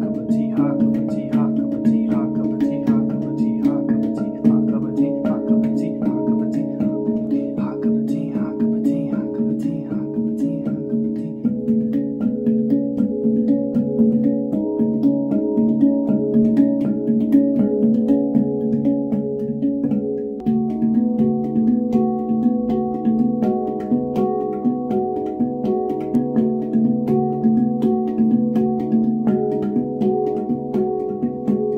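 Handpan played with both hands in a steady, quickly repeating 3:2 polyrhythm, struck notes ringing on over each other. The set of notes changes about a third of the way in and again about two-thirds in.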